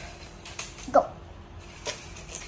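A LEGO Spike Prime robot moving under its motor, its plastic parts knocking twice, about half a second in and near the end. A child says "Go" about a second in.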